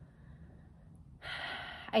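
A woman's audible in-breath, a short breathy intake lasting under a second, drawn just before she starts speaking again near the end.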